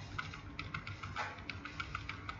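Computer keyboard keys clicking in a quick, irregular run of light taps, about a dozen strokes.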